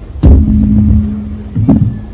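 A loud thump through the PA about a quarter second in, then a low rumble and a steady low hum for about a second, followed by two more thumps near the end: microphone handling and bumping noise on a stand as the next reader steps up.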